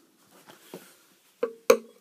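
Quiet room tone with a faint tick, then near the end a brief voiced 'uh' and a single sharp click just before speech resumes.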